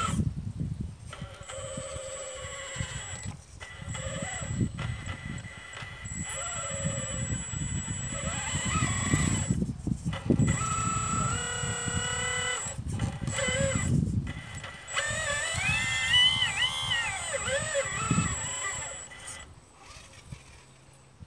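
Electric drive of a 1/12-scale RC Liebherr 954 model excavator whining as it digs. A high whine cuts in and out with each control move, with pitch-shifting tones under load, over the scrape and rustle of the bucket in dry soil.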